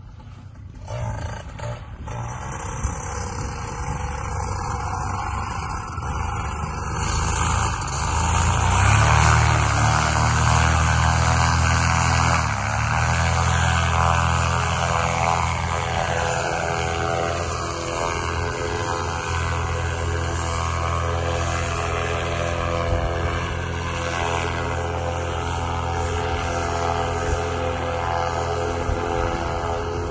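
Parajet Zenith paramotor's Moster 185 single-cylinder two-stroke engine and propeller at takeoff power, getting louder over the first eight seconds or so as it throttles up, then running steady as the paramotor climbs away.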